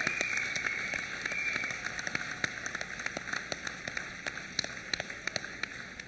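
Audience applause dying away: a dense patter of hand claps thinning to scattered single claps and getting quieter. A high held tone sounds over it for the first couple of seconds.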